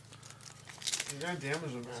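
Crinkling of a trading-card pack wrapper being handled, loudest in a short burst about a second in. A voice speaks briefly near the end.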